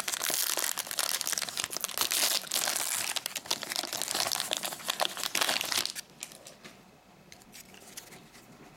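Trading-card pack wrapper (a 2019-20 NBA Hoops fat pack) being torn open and crinkled by hand, a dense crackling that stops about six seconds in.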